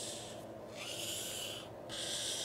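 Felt-tip marker drawing the straight sides of a box on paper: long high, rasping strokes, one ending just after the start, a second lasting about a second, and a third beginning near the end.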